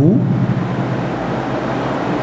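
A steady, even hiss of background noise, with the tail end of a man's spoken word at the very start.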